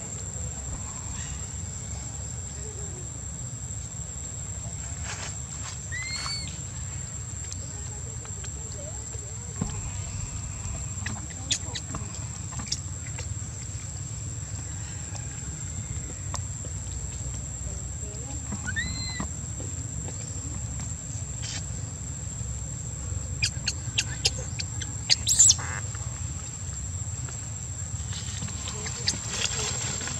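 Outdoor ambience: a steady high-pitched insect drone over a low rumble, broken by two short rising chirps about six and nineteen seconds in and a quick cluster of sharp clicks around twenty-five seconds.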